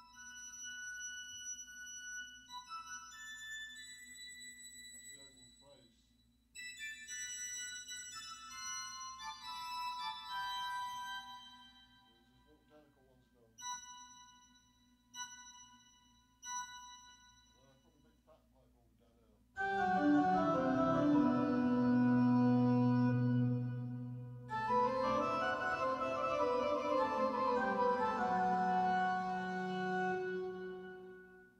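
Synthesizer keyboard playing pipe-organ and harp-type patches: sparse high notes and descending runs, then, about two-thirds in, loud sustained church-organ chords over deep bass notes. The sound carries a heavy church-like reverb.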